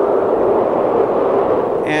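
A steady wind sound effect from a theatrical show soundtrack, blowing without gusts and cutting off near the end.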